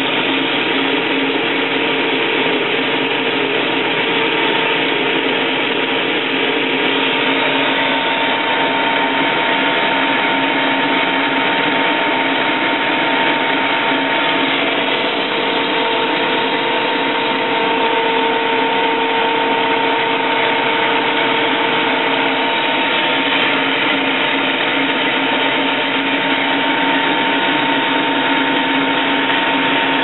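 A shop machine's electric motor running steadily for the whole time, a loud even noise with a constant whine.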